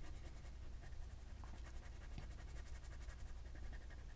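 Faint scratching of a Crayola colored pencil shading on heavy white cardstock in quick, repeated strokes.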